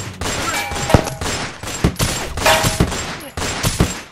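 A volley of gunshots, about five sharp cracks at uneven intervals: one about a second in, a close cluster between two and three seconds, and one near the end.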